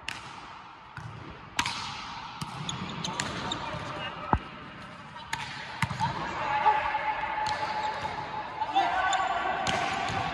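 A volleyball being struck by players' hands and forearms during passing, a sharp slap every second or so at uneven intervals, in a large hall. Players' voices call out in the second half.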